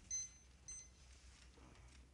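An electronic timer beeping twice: two short high-pitched beeps about half a second apart.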